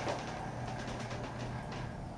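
A 1970s Armor traction elevator car riding smoothly: a steady low hum with faint light ticks.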